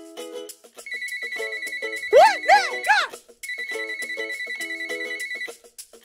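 An electronic phone ringing tone, a high buzzing note, sounds in two stretches of about two seconds each with a short break between them. A brief voice of three rising-and-falling sounds comes just before the break, and soft music runs underneath.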